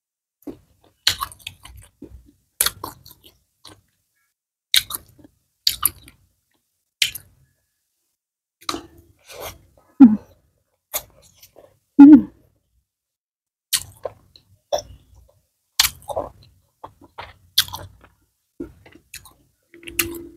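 A person chewing fried fish and fried rice, with sharp mouth clicks about once a second at an irregular pace. Two louder, low throaty sounds come about ten and twelve seconds in.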